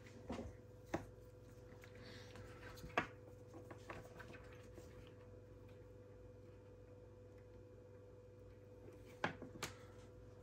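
A faint steady hum with a few light clicks and taps as multimeter test leads are picked up, handled and laid down on the workbench. The sharpest click comes about three seconds in, and there are two more near the end.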